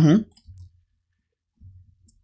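A single faint computer mouse click about half a second in, as a text box is clicked into. Otherwise the room is nearly silent.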